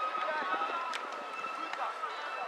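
Distant voices of players and onlookers calling out around an outdoor football pitch, with a faint steady high tone underneath.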